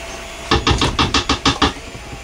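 A soap mold full of thick pine tar soap batter being tapped rapidly against a wooden counter, about ten quick knocks in just over a second, to bring air bubbles out of the batter.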